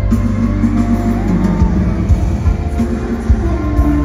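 Live pop song played through an arena PA and recorded from the crowd: a backing track with heavy bass and drum beats under a melodic line.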